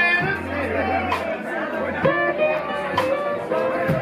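Live blues band: a man singing over electric guitar, electric bass and drums, with the drums striking about once a second.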